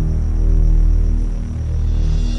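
A loud, steady low hum made of a deep tone and evenly spaced overtones, without change in pitch.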